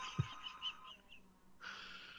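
Fading tail of an outro jingle: a held tone dies away under a second in, with a few short chirp-like notes, then a soft hiss starts near the end.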